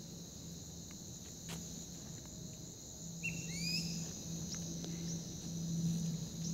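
Steady chorus of crickets and other insects, with a few short bird chirps about halfway through. A low hum comes and goes underneath in the second half.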